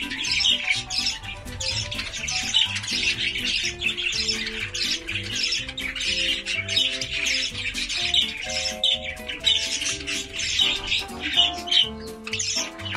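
Budgerigars chattering and squawking over background music that carries a melody of held notes.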